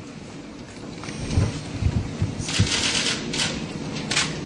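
Paper sheets being handled and shuffled on a table close to a microphone, with a few low bumps on the table about a second and a half in and a burst of loud rustling near the end.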